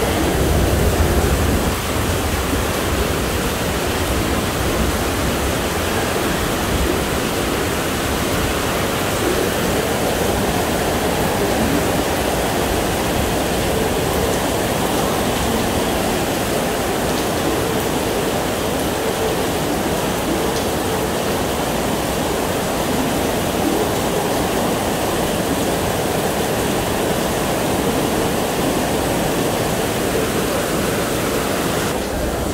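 Heavy rain pouring down in a steady, even rush, heard from under a covered walkway with glass side panels, with a little low rumble in the first couple of seconds.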